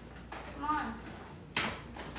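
A brown paper bag being handled, with one sharp crinkle about one and a half seconds in. A short vocal sound comes just before it.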